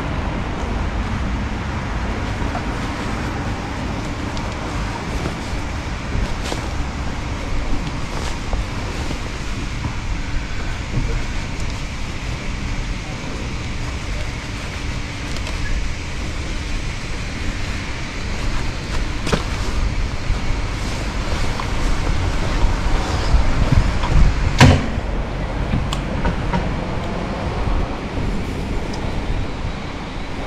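Steady low rumble of road traffic, with a single sharp knock about twenty-five seconds in.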